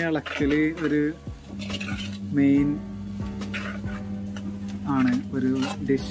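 A metal spoon scraping and clinking against a black cooking pot as beef is stirred and dry-roasted over a wood fire, with short clicks throughout. A voice sings or hums over it in several short phrases.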